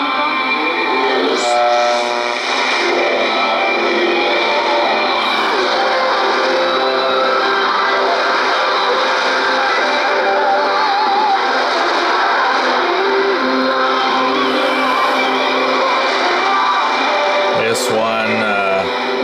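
Music from an AM shortwave broadcast in the 25-metre band, heard through a communications receiver with the narrow, band-limited sound of AM radio. It is tuned to 11855 kHz, a station the listener takes, with some doubt, for Radio Aparecida from Brazil.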